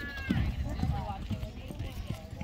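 Hoofbeats of a horse galloping on soft arena dirt, a run of dull thuds, with voices in the background.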